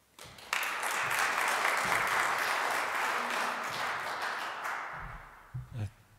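Audience applauding: dense clapping that starts about half a second in, holds steady, then thins out and dies away at about five seconds.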